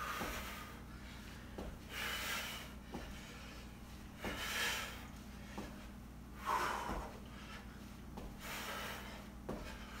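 A man's hard, puffing breaths during squat jumps, about one every two seconds, with light thuds and squeaks as his sneakers land on the rubber gym floor.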